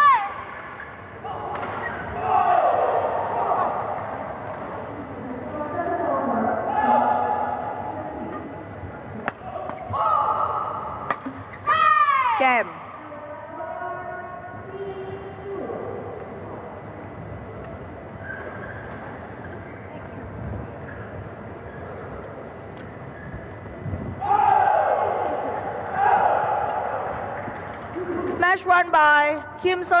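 Sounds of a badminton match: players' shouts and calls with a few thuds, including sharp falling cries at the start and about twelve seconds in. A public-address announcer starts speaking near the end.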